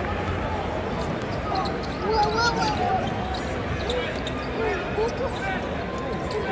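A basketball being dribbled on the hardwood court during live play in an arena, with short high sneaker squeaks and the crowd's chatter and nearby voices all around.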